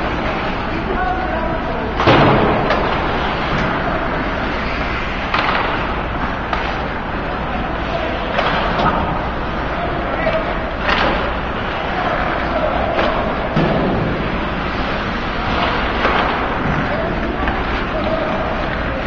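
Ice hockey play in a rink: a steady wash of skates on ice and background voices, broken by sharp thuds of the puck and players hitting the boards every few seconds. The loudest thud comes about two seconds in.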